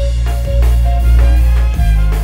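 Live funk band playing: trumpet and saxophone over electric guitar, a heavy electric bass line and a drum kit.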